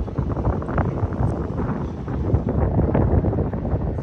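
Wind buffeting the phone's microphone, an uneven low rumble.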